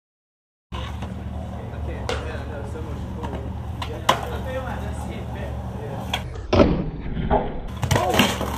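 Skateboard on asphalt: a rolling rumble under sharp clacks of the board popping and landing about 2 and 4 seconds in, then a louder jumble of knocks and thuds near the end as the rider falls on the pavement and the board clatters away.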